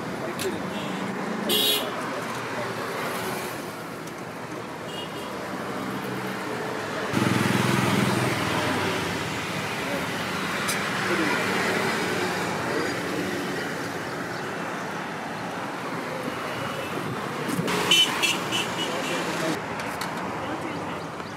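Roadside traffic noise with vehicles passing and horns sounding now and then. A louder vehicle goes by about seven seconds in.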